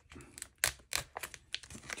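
A clear plastic pouch being cut open, the thin plastic tearing and crinkling in a series of short, sharp crackles.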